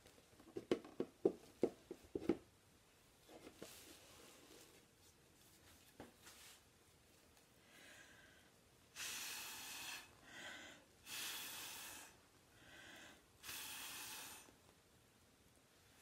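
A quick run of about six sharp taps, then from about nine seconds three long breathy puffs, each a second or so, with softer short breaths between them. The puffs are air blown through a drinking straw onto wet acrylic pour paint to spread the cells.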